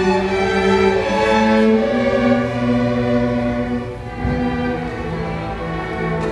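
Student string orchestra of violins, cellos and double bass playing held, bowed notes, dipping briefly quieter about four seconds in.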